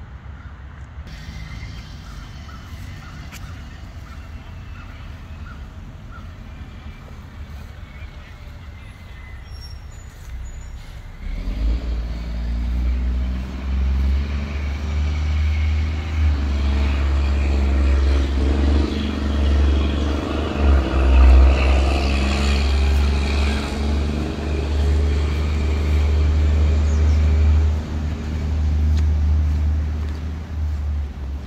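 A large motor vehicle's engine running nearby, coming in about eleven seconds in and staying loud with a deep, steady rumble until the end; before that only quiet outdoor background.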